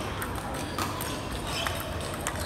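Table tennis ball in a rally, a few sharp clicks as it strikes the paddles and the table, over the noise of a busy hall.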